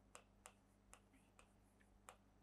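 About five faint, irregular ticks of a pen tip tapping on an interactive touchscreen board as a word is handwritten on it.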